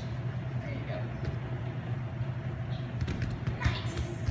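Room tone of a gymnasium: a steady low hum with faint voices in the background, and a thump near the end.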